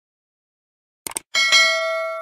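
Subscribe-button sound effect: silence for about a second, then two quick clicks and a bright bell chime that rings on and slowly fades.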